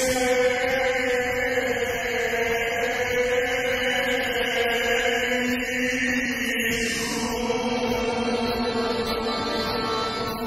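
Live sevdalinka performance: a male voice holds one long sustained note over the band's accompaniment, the note moving to a new pitch about six and a half seconds in.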